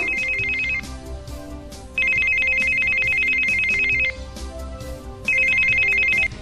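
A mobile phone ringing: a fluttering two-tone electronic ring in bursts of about two seconds, a little over a second apart, over soft background music.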